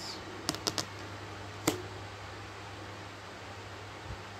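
Tarot cards being handled: three quick light clicks about half a second in and a sharper one near 1.7 s, then only a steady low hum.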